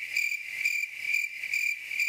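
Cricket chirping, a steady high trill pulsing about four times a second, dropped in as the comedy 'crickets' effect for an awkward silence.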